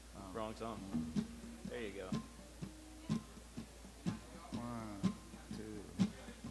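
Soft live acoustic and electric guitar playing, sparse plucked notes, with a man's voice singing over them.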